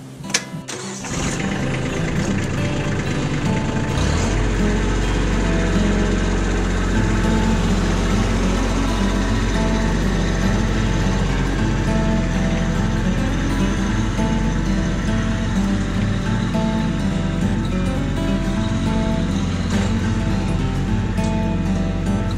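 Kubota compact tractor's diesel engine starting up and then running steadily as the tractor drives off, under acoustic guitar music.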